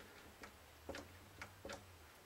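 Faint clicks, about two a second and slightly uneven, from the trigger of a one-handed bar clamp being squeezed to tighten it on a glued guitar neck joint.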